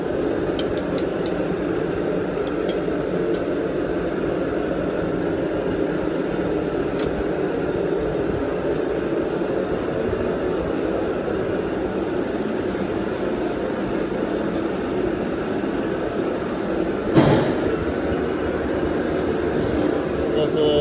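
Charcoal fire in a clay roasting oven burning with a steady rush, while iron roasting hooks clink lightly a few times in the first three seconds as the suckling pigs are handled. There is a single sharp knock about seventeen seconds in.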